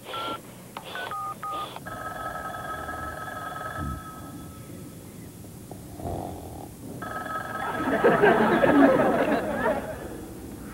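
A touch-tone telephone being dialed, a few short paired beeps, then a telephone ringing twice in long steady rings. A louder noisy stretch sits under the second ring near the end.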